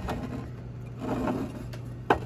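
A steady low hum, with a soft, brief rustle-like sound about a second in.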